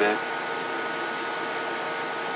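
Steady hiss and hum from bench electronics, with a few faint steady whining tones over it.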